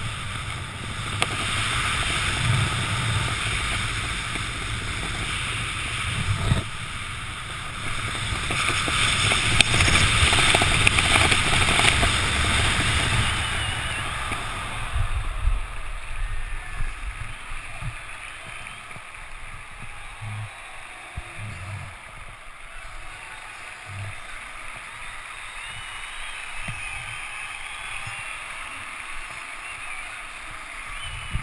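Wind rushing over a parachutist's helmet-camera microphone during the final canopy descent, swelling to its loudest about ten seconds in. It dies away around a quarter of the way past the middle as he lands, leaving quieter rustling and scattered low knocks as the canopy is handled on the ground.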